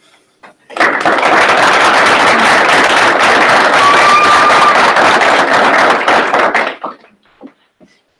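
Audience applauding. It starts about a second in, holds for about six seconds, and then dies away.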